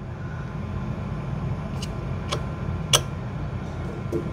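Light, sharp clicks as thin metal business cards are handled and pressed into place on a sticky printer-bed mat, three of them in the second half. Under them runs a steady low machine hum.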